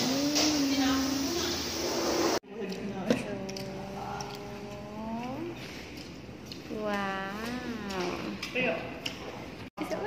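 A voice singing long, smoothly gliding held notes. The sound cuts off abruptly about two and a half seconds in, then continues in two long sung phrases.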